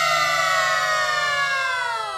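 A sinden, a female Javanese gamelan singer, holds one long high note that slides steadily downward in pitch and trails off at the end of a sung phrase.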